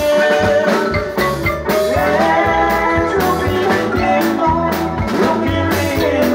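Marimba orchestra playing live: two large wooden marimbas struck with mallets by several players, in a fast run of notes over a steady drum beat.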